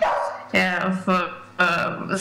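Speech: a woman talking over an online video call, in short voiced stretches.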